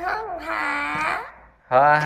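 Speech only: drawn-out voices slowly sounding out Vietnamese syllables built on h, such as "ha", with a short pause about one and a half seconds in.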